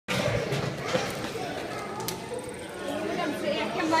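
Several people talking over one another, a jumble of overlapping voices.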